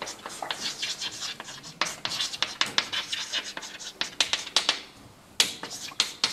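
Chalk writing on a blackboard: a quick, uneven run of sharp taps and scratches as letters are written, with a brief pause about five seconds in.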